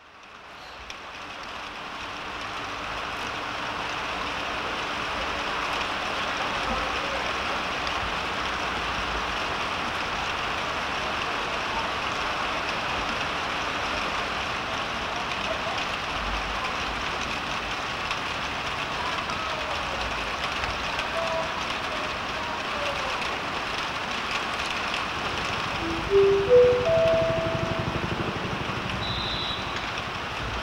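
Steady rushing railway-station ambience, fading in at the start. Near the end comes a short chime of a few tones stepping upward.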